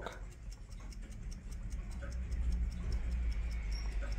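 Drocourt grande sonnerie carriage clock's platform escapement ticking, a rapid, even ticking heard with the clock's back door open, over a low steady hum.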